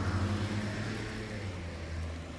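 Street traffic: a vehicle passing, its tyre hiss swelling and fading in the first second or so, over a steady low rumble.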